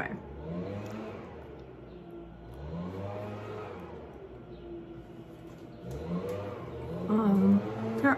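A motor vehicle's engine revving, its pitch rising and falling several times.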